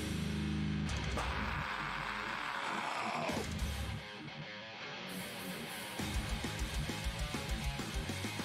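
Opening of a metalcore song, with guitar chords ringing and a falling swept sound over a couple of seconds. About six seconds in, a fast, regular low drum beat comes in under the guitars.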